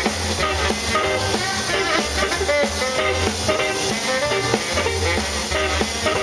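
Live band playing an instrumental passage: a tenor saxophone plays the lead over a walking double-bass line and a steady drum-kit beat.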